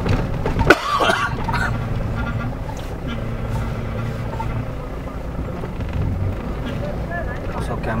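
A vehicle's engine and road rumble heard from inside the cabin as it creeps along a rough track, with voices of people outside. A sharp knock comes about a second in, followed by a short call that rises and falls.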